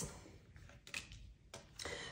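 Tarot cards handled on a tabletop: a few faint taps and slides of card against card and table, with a soft rustle rising near the end.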